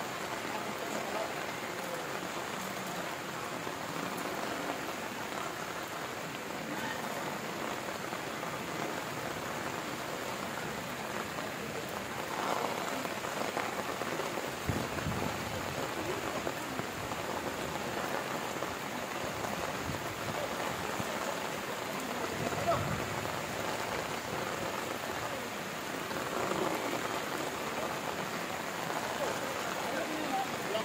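Heavy rain falling steadily on the ground, with faint voices now and then.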